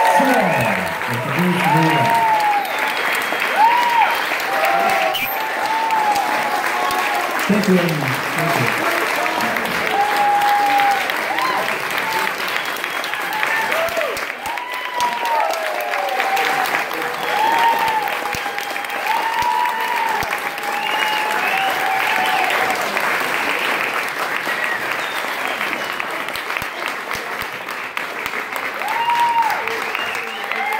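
Audience applauding steadily, with scattered cheers and whoops from the crowd.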